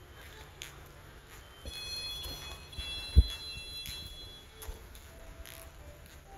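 Light footsteps on a hard tile floor, with a single sharp low thump about three seconds in. A few high, steady electronic-sounding tones ring for about three seconds in the middle.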